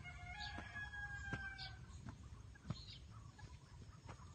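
A rooster crowing once, faint: a single long call lasting nearly two seconds at the start.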